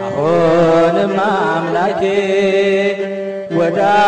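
Soundtrack music: a chant-like melody, sliding and heavily ornamented, over a steady low drone. The phrase breaks off and a new one begins near the end.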